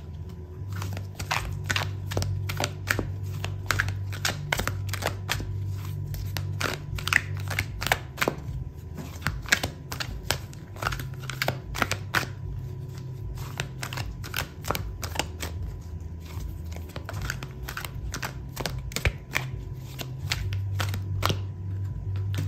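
Oracle cards being shuffled and handled by hand: a long, irregular run of light clicks and snaps of card on card, over a low steady hum.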